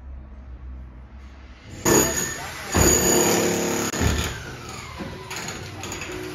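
Demolition work: a loud mechanical noise with a pitched whine starts suddenly about two seconds in, with heavy knocks about three and four seconds in.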